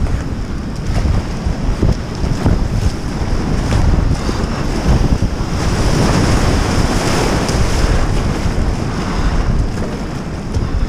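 Rushing river rapids: foaming white water and waves breaking around a kayak, with paddle splashes and wind buffeting the boat-mounted camera's microphone. It is loudest in the middle, as the kayak punches through a breaking wave.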